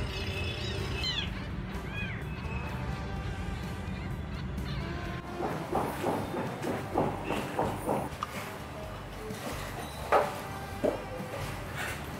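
A newborn kitten gives a couple of high, thin mews over background music. Then irregular knocks and clatter of building work, ending with two sharp, louder strikes near the end.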